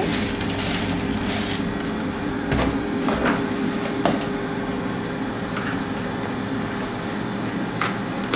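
Steady kitchen background hum under a few light taps and clicks, as chopped green onion and parsley are shaken from a plastic container onto a bowl of rice-noodle salad and then tossed by hand.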